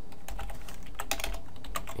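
Computer keyboard being typed on: a quick run of keystroke clicks as code is entered.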